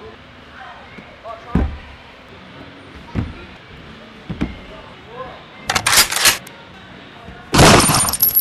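People flipping on trampolines: three dull thuds of bounces on the trampoline bed about a second apart, then two loud, harsh bursts of noise, the second and loudest near the end, likely from hard landings on the mats.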